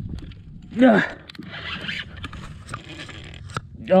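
Scraping and rustling of a shirt sleeve rubbing against a chest-mounted action camera as the angler strains on a heavy spinning rod, with a steady low rumble and a few small clicks underneath.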